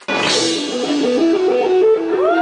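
Rock music cuts in suddenly with a cymbal crash, then a guitar riff of quick repeating stepping notes over drums.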